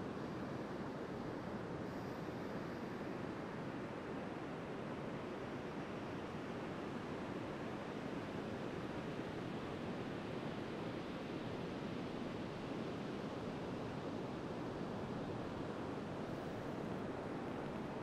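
Steady wash of sea surf breaking along a beach, an even hiss with no distinct swells or breaks.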